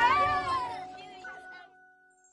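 Music with a high, gliding, voice-like call in its first half, the whole fading away to near silence by the end.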